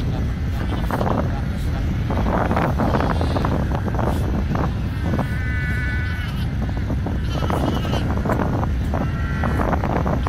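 Cape fur seal pups calling with repeated wavering, bleating cries, several in a row. Underneath is a steady low rumble of wind on the microphone.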